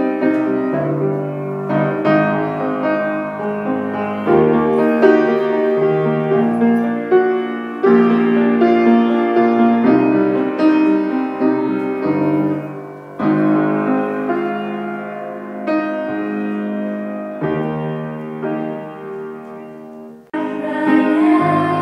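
Grand piano being played: chords struck every two to three seconds and left to ring, with the playing dying away near the end.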